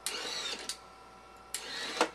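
Small electric motor and gear track of a wristblade mechanism built from CD-ROM drive parts, running twice for about half a second each to drive the blades out and back. The first run ends in a sharp click.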